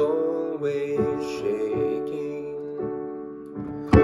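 A man's solo song with keyboard accompaniment: his voice holds the end of a line, then piano-like chords play on alone in the gap between lines, and a new sung phrase starts right at the end.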